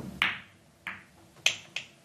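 Pool balls clicking together as the cue ball breaks out a cluster at controlled speed: a sharp click as it hits the cluster, then a few more separate clicks as the struck balls spread and collide.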